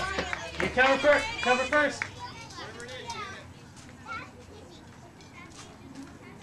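Girls' voices calling and chattering, loud for the first two seconds, then dropping away to a few faint calls over quiet outdoor background.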